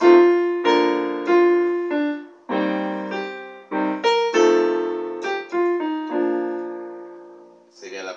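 Electronic keyboard on a piano voice playing a hymn phrase in B-flat, a melody over chords in both hands: a dozen or so struck notes and chords, each fading. The last chord is held and dies away near the end.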